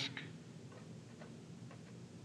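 Faint, separate ticks of a pen tip on paper as short letter strokes are written, about five light taps spread over two seconds.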